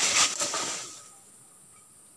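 Long wooden firewood poles clattering and rustling down onto dry leaf litter, with a few knocks, dying away about a second in. Behind it a steady high insect drone.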